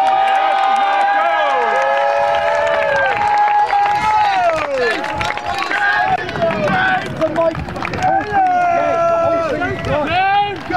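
Several voices shouting and cheering in long, drawn-out yells that overlap and fall in pitch at their ends, urging on a player breaking clear for a try.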